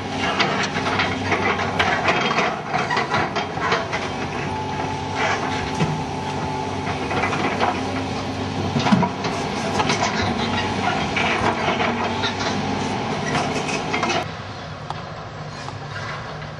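A New Holland excavator's diesel engine running steadily under load, with broken masonry and rubble clattering and knocking as it works. The sound drops off sharply about two seconds before the end.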